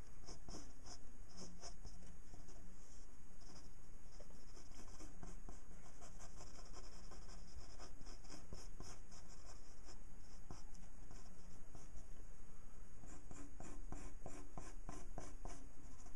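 Ink pen scratching on paper in many short, quick strokes while a drawing is inked, over a low steady hum.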